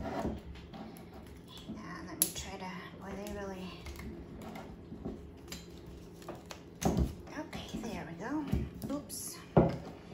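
Ceramic lid of a pottery mug clinking and scraping against the mug as it is worked loose, with a few sharp knocks about two seconds in, at about seven seconds and near the end. Low speech comes in between.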